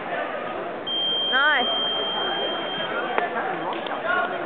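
Electronic match timer sounding one steady high beep for about two seconds, signalling the end of the bout. Crowd chatter runs throughout, with a short shout that rises and falls in the middle of the beep.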